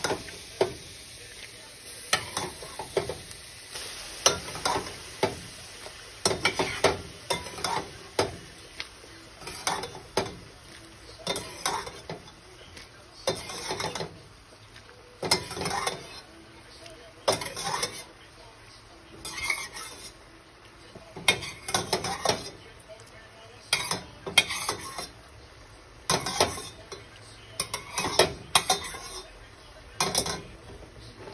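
Wooden spatula stirring and scraping penne pasta around a metal pan, in short scraping strokes every second or two.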